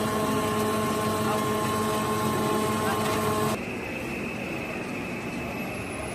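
Plastic pelletizing line machinery running with a steady, multi-toned hum. About halfway through the hum stops abruptly and a quieter, different steady machine drone with a thin high tone takes over.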